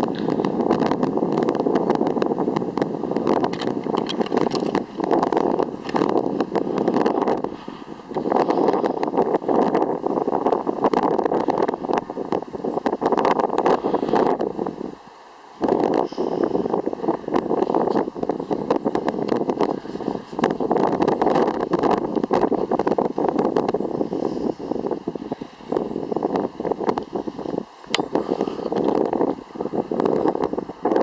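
Wind buffeting the camera microphone: a loud, gusting rumble that rises and falls unevenly, with a brief dip about halfway through.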